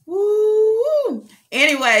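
A woman's voice drawing out one long, steady vocal note for about a second, rising briefly and then dropping off, like an exaggerated drawn-out "hmm"; about a second and a half in she starts talking.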